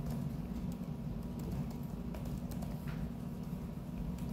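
Classroom room tone: a steady low hum with scattered faint taps and clicks.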